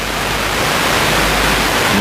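Steady, loud hiss of broad noise with no clear pitch or rhythm, the same noise bed that also runs under the narration.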